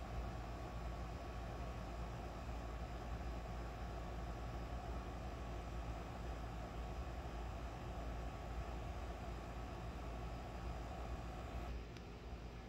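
Steady low outdoor background rumble with a faint hum and no distinct events.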